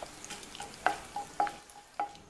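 Cumin and fennel seeds sizzling in hot oil in a nonstick kadai while a wooden spatula stirs them. A light steady frying hiss runs through it, broken by a few sharp clicks.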